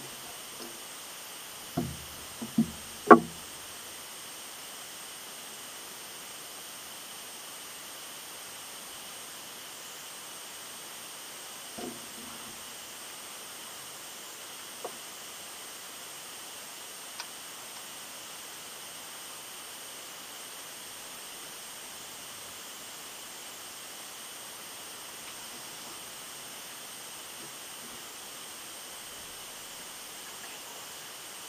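Steady hiss with faint high steady tones, broken about two to three seconds in by a quick run of four knocks close to the microphone, the last the loudest. A single faint knock and a couple of small clicks follow later.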